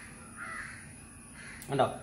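Crows cawing faintly, two or three hoarse calls through the first part. Near the end come a short click and a brief spoken syllable.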